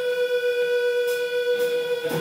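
A live band's amplified instrument holding one steady high tone that does not change in pitch, with two faint cymbal taps about a second in.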